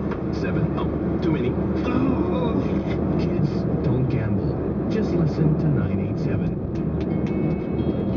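Steady road and engine rumble inside a moving car's cabin, with indistinct talk underneath.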